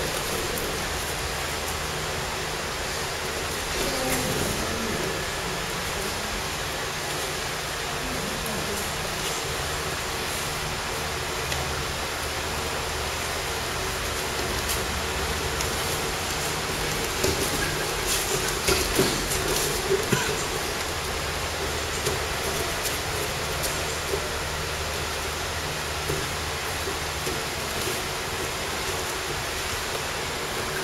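Steady background noise with a low hum, with scuffs, rustles and knocks from bare feet and bodies on plastic sheeting as two men grapple; the knocks cluster in a short busy stretch about two-thirds of the way through.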